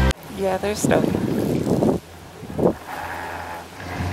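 A person's short voiced sounds, then a rush of noise that drops away sharply about two seconds in, leaving a faint low hum and another brief vocal sound.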